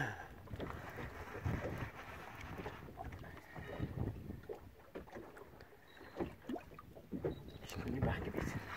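A short laugh from a man, then quiet, uneven background noise aboard a small boat at sea, with scattered faint knocks.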